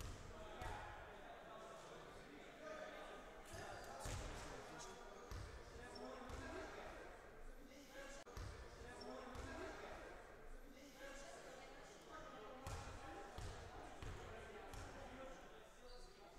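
A basketball bouncing now and then on a gym floor, with faint voices of players on the court, all echoing in a large sports hall.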